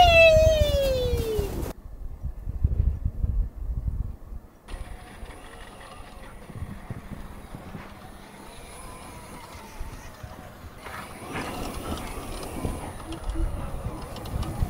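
A man's shout of "wee!" falling in pitch, then an off-road golf cart driving up a snowy hill at a distance, faint and steady at first and growing louder near the end as it comes closer. The sound cuts abruptly twice early on.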